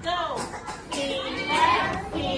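Several young children's voices talking at once.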